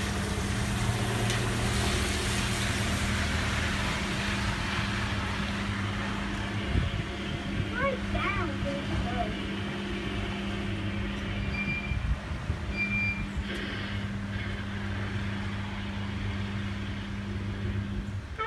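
Steady low electrical hum from coin-operated kiddie rides, over a noisy shop background. Two short high beeps come around twelve seconds in.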